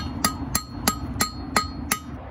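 Hand hammer striking red-hot steel on an anvil in a steady rhythm, about three and a half blows a second, each blow with a short metallic ring.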